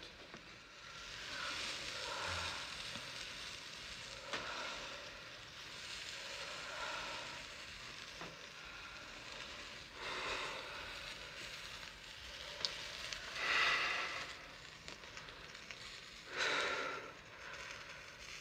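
A steady faint hiss and crackle of asthma fumigation powder smouldering in a small dish. In the second half come three loud breaths, each about a second long, as a man breathes in the smoke.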